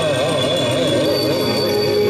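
Loud music: a melody line that wavers rapidly up and down, settling into a held note near the end, over a steady bass.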